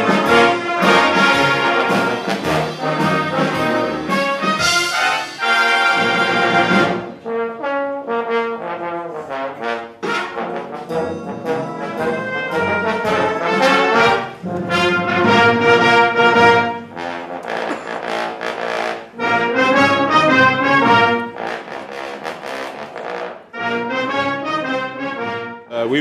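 Brass band playing live, full chords from cornets, horns, euphoniums and trombones in phrases with short breaks between them.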